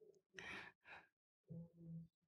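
Near silence broken by a person's faint breathy sighs, then a brief faint voiced sound near the end.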